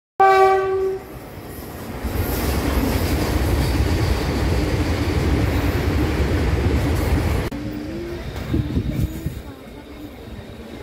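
A short, loud train horn blast lasting under a second, then a train crossing a bridge overhead: the running noise of its wheels on the rails builds up and holds steady. About seven and a half seconds in, the sound cuts abruptly to a quieter, low rumble of a slowly moving train.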